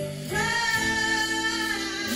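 A woman singing live with a band, electric bass under her voice; about a third of a second in she slides up into one long held high note.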